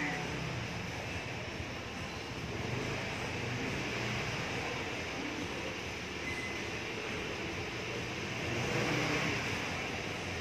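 Steady background rumble and hiss, a little louder near the end.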